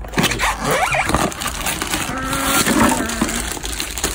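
Cardboard box and plastic packaging rustling and crinkling as they are handled, with a short steady hum of a voice a little past the middle.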